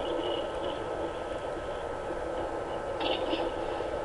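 Steady hiss and faint hum of an open microphone line, with no speech.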